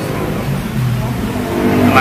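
A motor vehicle's engine running with a steady low hum.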